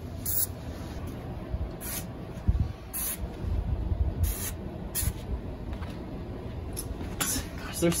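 Liquid insecticide sprayer wand hissing in short bursts as it is worked into the crevices of an upholstered chair, with handling bumps against the furniture.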